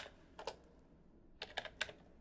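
Faint keystrokes on a computer keyboard as a command is typed: about five separate clicks, one at the start, one about half a second in, then a pause and three quick ones close together.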